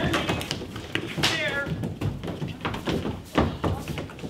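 A high vocal whine falling in pitch, about a second in, as an actor lowers herself onto a seat on stage. Scattered light knocks and taps on the stage floor sound around it.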